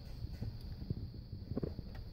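Background noise in a vehicle cabin during a pause in talk: a low rumble and a steady faint high whine, with a few soft clicks.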